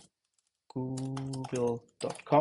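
Keystrokes on a computer keyboard as a web address is typed. Partway in, a man's voice holds one steady note for about a second.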